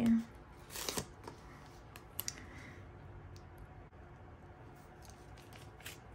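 Paper washi sticker strip being peeled off its backing sheet and handled: a short scratchy peel about a second in, then faint rustling with a few small clicks.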